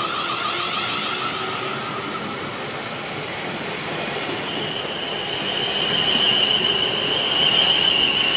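Class 450 Desiro electric multiple unit pulling away and running past, its traction equipment whining over the noise of the moving train. About halfway through a steady high-pitched whine sets in and grows louder toward the end.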